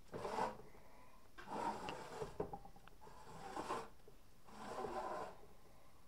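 A homemade tin-can gasifier stove being handled and turned, its metal cans rubbing and scraping softly against the hand and counter four times.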